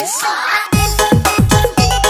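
Dugem (Indonesian funkot-style) DJ remix music. Over a short break without bass, a rising sweep effect builds. About three-quarters of a second in, the full beat drops back in with heavy bass and fast drum hits, roughly four a second.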